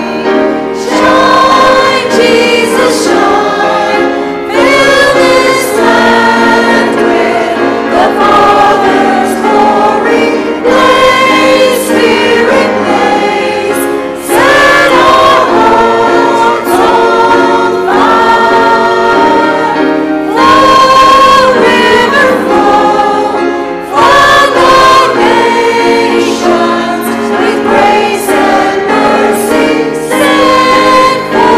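Small mixed choir of men and women singing a hymn in parts, in phrases with brief breaks between them.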